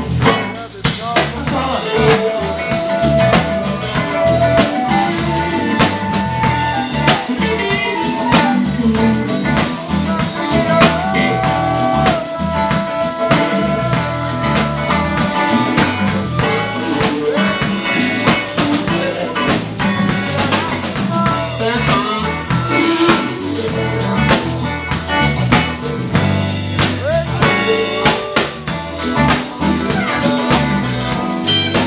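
A live blues band playing: electric guitar, bass and drum kit, with a harmonica cupped against a vocal microphone playing long held and bent notes over them.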